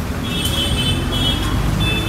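Steady low rumble of outdoor background noise, with a high, thin tone coming and going several times from about a quarter of a second in.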